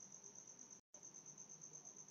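Near silence with a faint, high-pitched trill pulsing evenly about ten times a second. The sound cuts out completely for a split second just before the middle.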